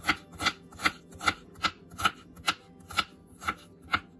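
Chef's knife chopping a garlic clove on a wooden cutting board: a steady run of about ten knocks, two to three a second.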